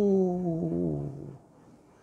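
A man's voice holding one long drawn-out vowel that slides slowly down in pitch and fades out about a second and a half in.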